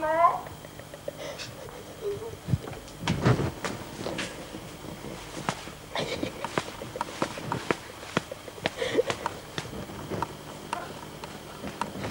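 A short rising vocal cry at the very start, then a run of scattered sharp clicks and knocks with a few faint vocal sounds among them.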